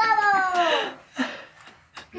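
A child's single high-pitched, meow-like squeal, falling in pitch over about a second.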